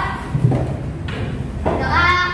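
Children singing together, with a break between sung phrases through the middle and a low thud about half a second in. The singing comes back near the end.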